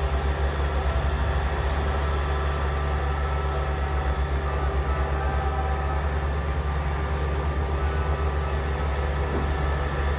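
Fire engine's diesel engine running steadily at idle: a deep, even rumble with a steady hum over it.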